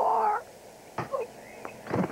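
A man's short, strained shout, about half a second long, at the start. About a second in, and again near the end, comes a brief sharp knock.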